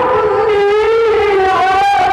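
A man's voice chanting Qur'an recitation in the melodic tilawah style into a microphone, holding one long note whose pitch wavers slowly, with a short break near the end.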